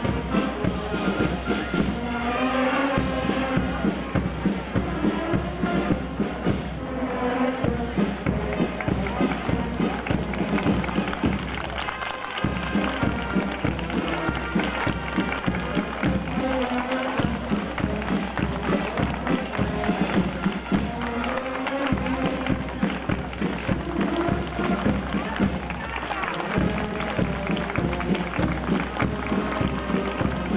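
Brass marching band playing a march, with a steady beat running under the tune.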